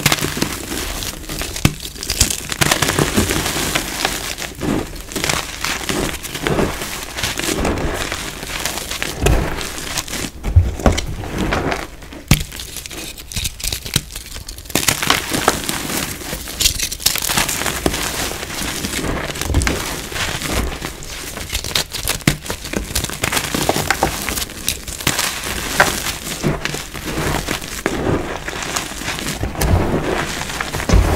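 Hands crumbling and squeezing gritty gym chalk: a dense run of irregular dry crunches and crackles as the pieces break and fall through the fingers, easing off briefly about halfway through.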